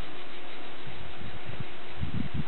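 Steady background hiss with a faint steady hum, and a few soft low bumps in the second half.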